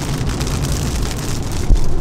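Inside a moving car in heavy rain: rain hitting the glass and body over steady tyre and road noise, with a low thump near the end.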